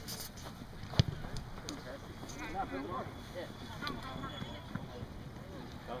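Faint, distant shouting and calling from players across an open rugby pitch, with one sharp knock about a second in.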